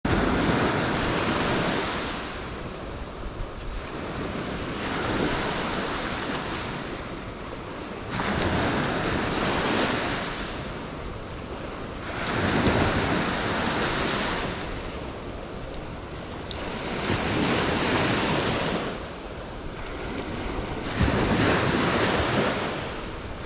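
Small waves breaking on a sandy beach, each one surging up and washing in, then fading, every four to five seconds.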